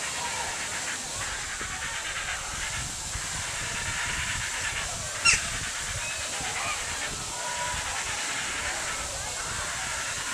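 Steady outdoor background hiss with faint distant voices and scattered faint calls. About five seconds in comes one short, sharp call that sweeps downward in pitch.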